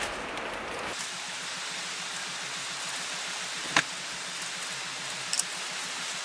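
Steady hiss of heavy typhoon rain. A sharp click comes a little under four seconds in and a fainter one shortly after.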